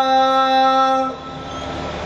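A man's voice holding one steady sung note of Sikh kirtan into a microphone. The note ends about a second in, and a quieter hiss follows.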